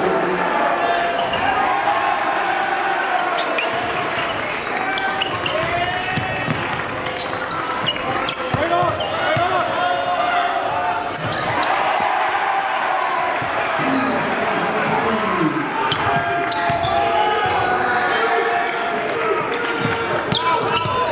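Basketball bouncing on a gym's hardwood floor, with many indistinct overlapping voices in the gym.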